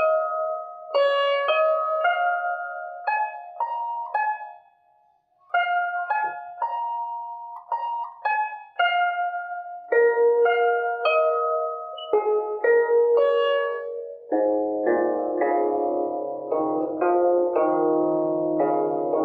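Guzheng (Chinese zither) played slowly as practice, single plucked notes ringing and decaying one after another, with a short gap about five seconds in. Near the end the playing turns quicker and fuller, with lower notes sounding together under the melody.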